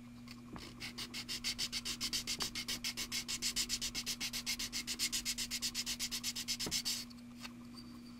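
A small plastic model-kit part rubbed back and forth on a sanding sponge. The quick, even strokes come about six or seven a second, start about a second in and stop about a second before the end.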